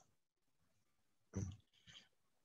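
Near silence, broken about one and a half seconds in by a single brief voiced sound from a man, a short hesitation noise.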